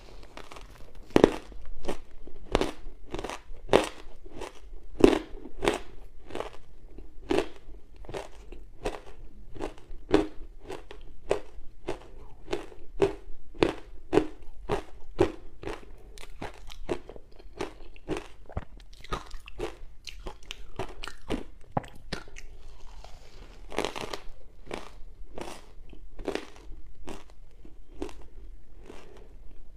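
Close-miked crunching of soft ice chunks coated in dry matcha powder, bitten and chewed in a steady run of crisp crunches, about two a second.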